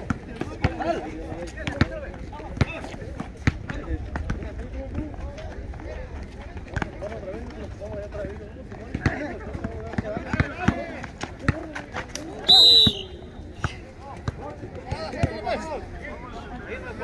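Outdoor pickup basketball game: a basketball bouncing on an asphalt court as repeated sharp knocks, under players' and onlookers' voices calling out. About twelve and a half seconds in there is a brief, loud, high-pitched blast.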